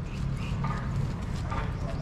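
Walking on outdoor paving: a steady low rumble with soft footsteps, and faint voices of people a little way off.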